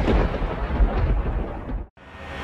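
A loud, deep rumbling boom sound effect, thunder-like, laid in by the editor. It tails off and cuts off sharply just before the end.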